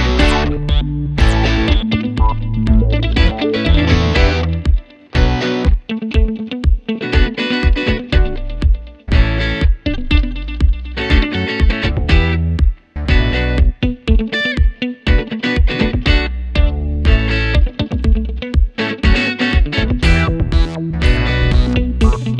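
Background music led by guitar, with bass and a steady beat.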